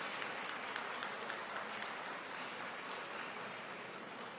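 Spectators applauding with many hands clapping, the applause slowly dying down.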